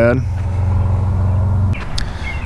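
Jeep Wrangler JL engine idling steadily, a low even hum, which cuts off abruptly near the end.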